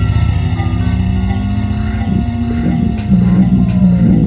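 A sample from a Bastl Micro Granny sampler played through a Dr. Scientist BitQuest digital effects pedal: a steady, fast low pulsing under held tones. About halfway through, pitches start sliding down and up as the knobs are turned.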